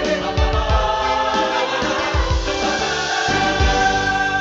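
Music with singing voices over a steady beat; the beat drops out near the end, leaving held tones.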